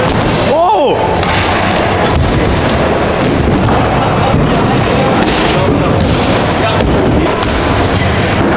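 Stunt scooter wheels rolling on concrete ramps in a large indoor skatepark hall, with repeated sharp clacks and bangs of scooter decks and landings. A brief shout comes about a second in.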